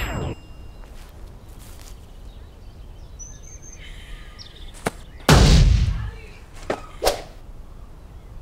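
Quiet outdoor background with a few sharp knocks and clicks. A short high whistle comes about three seconds in, and one loud rushing burst lasts under a second just past the middle.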